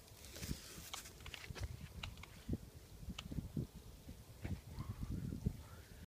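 Faint rustling in dry grass with scattered light knocks and small clicks as the can is set down and the phone is handled, with one sharper click about three seconds in.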